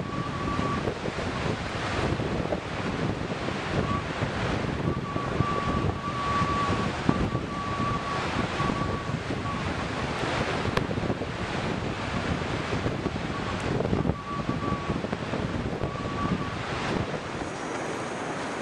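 Wind-driven waves breaking on a shore, a steady rushing wash with wind buffeting the microphone. A thin faint whistle comes and goes several times over it.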